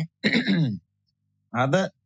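A man speaking Malayalam in short bursts, with a pause of under a second between them.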